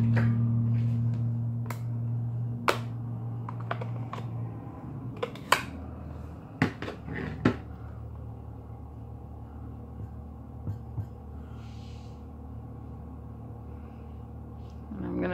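Sharp clicks and taps of hard plastic on a tabletop, several in the first eight seconds and fewer after, as a clear acrylic stamp block and a plastic ink pad case are handled. Under them is a low steady hum that fades over the first few seconds.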